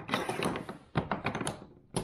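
Plastic kayak track base being twisted and worked loose along an aluminum gear track: rapid clicking and rattling with a few louder knocks.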